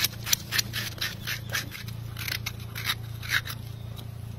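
A toothed coconut scraper rasping the soft flesh out of a young coconut shell in quick repeated strokes, about three a second. The strokes stop shortly before the end.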